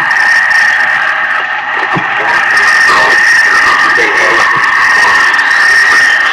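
Loud, dense noise music: a steady high tone held over a thick wash of hiss, with faint warbling, smeared sounds drifting through it.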